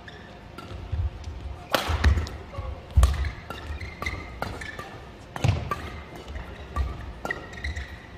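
Men's singles badminton rally: sharp racket strikes on the shuttlecock every second or two, with shoes squeaking and feet thudding on the court mat between shots.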